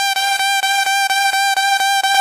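Funk mandelão beat, instrumental: one bright, held note on a single pitch, chopped into a fast, even stutter of about seven pulses a second.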